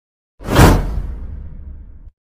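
Whoosh sound effect for an animated logo reveal, starting suddenly about half a second in, with a low rumble that fades out over the next second and a half.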